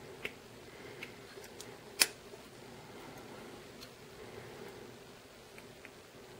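Smith & Wesson Special Ops assisted-opening linerlock folding knife being handled: a few faint clicks, then one sharp click about two seconds in as the blade is folded shut.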